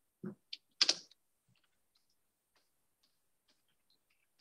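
Typing on a computer keyboard: a few louder keystrokes in the first second, then faint, scattered key taps.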